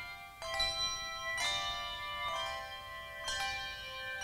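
A handbell choir playing a slow piece: chords of several bells struck about once a second, each ringing on and overlapping the next.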